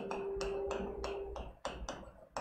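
Marker pen writing on a whiteboard: a quick run of light taps and strokes, several a second, as letters are formed, with a faint steady tone under the first second and a half.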